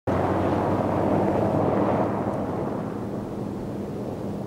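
Off-road four-wheel-drive vehicle driving on a dusty dirt track: a steady low engine hum under rough road noise, easing off a little after about two seconds.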